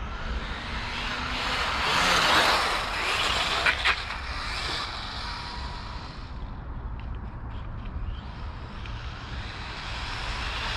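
A brushless electric RC buggy (Hobbywing 3652 5200 kV motor) driving on asphalt. Its motor and tyre noise swells as it runs past about two seconds in, with a couple of sharp clicks near four seconds, then fades as it moves away.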